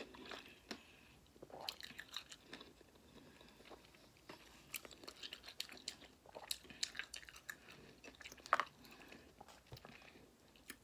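Close-up chewing and biting of lemon and lime wedges with the seeds left in: irregular wet smacks and small crunches, with one sharper crunch a little over eight seconds in.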